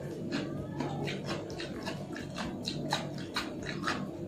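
Close-miked wet chewing and lip-smacking of a mouthful of food: a quick run of short sticky clicks, several a second, over a steady low hum.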